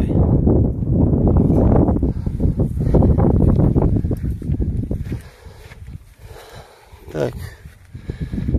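Wind buffeting a phone microphone outdoors: a loud, uneven rumble for the first five seconds that then drops away to a faint hiss.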